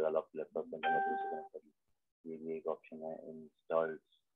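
A man's speech, with a short steady electronic tone about a second in, lasting under a second.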